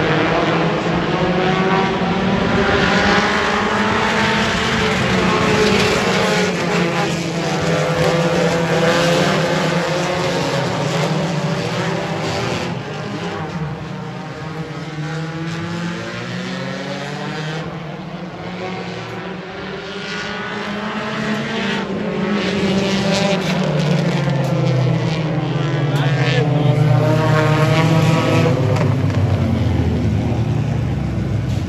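A pack of compact-car race engines running hard around a paved oval, several pitches overlapping and sweeping up and down as the cars pass. They fade somewhat about halfway through, then come back loud as the pack passes close near the end.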